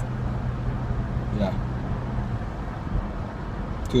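Car cabin noise while driving: a steady low engine and road hum with an even rumble. The hum's note drops away a little over halfway through.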